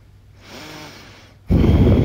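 A faint voice-like sound, then about one and a half seconds in a sudden loud rush of breath blown hard into the microphone, which keeps going.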